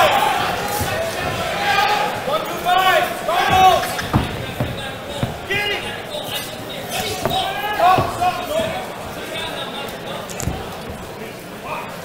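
Boxing ring sounds: a few dull thuds of punches and boxers' footwork on the canvas, under short shouts from the corners and crowd.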